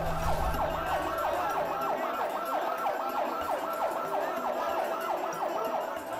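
Emergency vehicle siren sounding a rapid yelp, its pitch sweeping up and dropping back about three times a second.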